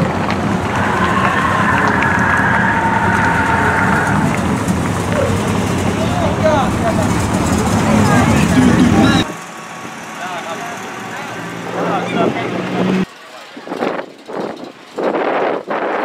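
Car engines running as cars drive slowly past, loud for the first nine seconds, then cut to quieter passages; near the end, gusts of wind buffet the microphone.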